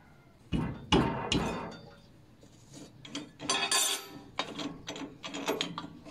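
Metal clanks of a spanner on the arbor nut of an old table saw as the nut is worked loose to change the blade: a few sharp knocks in the first second and a half, then a run of lighter metallic clicks and rattles.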